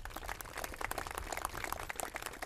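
A small seated crowd applauding: a dense, even patter of many hand claps.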